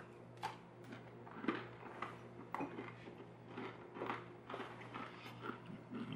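A person chewing a bite of hard, twice-baked coffee biscotti dunked in coffee: faint, uneven crunches, about two a second.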